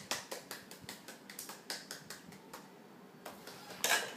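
Irregular light clicks and taps, several a second, of small objects knocking on the floor as a toddler picks them up, with a louder knock just before the end.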